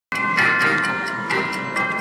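Slot machine's clock-themed bonus sound from its speaker: several steady, bell-like chime tones held together, with a few sharp clock ticks among them. It begins abruptly.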